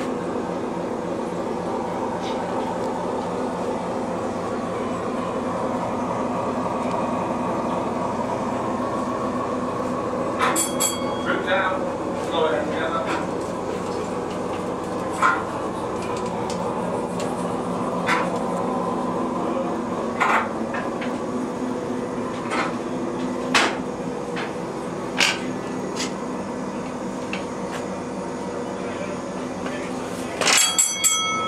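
Steady machinery drone in a submarine's diesel engine room: a continuous hum holding the same pitch throughout, like diesel engines running. A few sharp clicks and brief faint voices sound over it.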